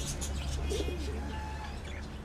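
Caged white doves cooing softly, with light bird chirps over a steady low hum.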